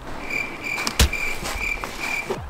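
A high, cricket-like chirp pulsing over and over, with a single sharp click about a second in.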